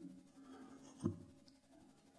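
Faint scratching and rustling of fingers fiddling with a microphone worn at the side of the head, with one brief bump about a second in.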